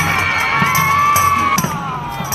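A woman's long, high-pitched scream that rises in, is held for about a second and a half and then falls away, over a steady drumbeat.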